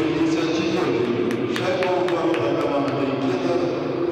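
Hockey arena sound after a goal: a voice with music behind it, and a few sharp clicks between about one and two and a half seconds in.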